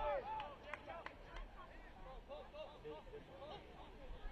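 Faint field sound of a soccer match: players shouting short calls to each other, loudest at the very start, with a few sharp knocks about a second in.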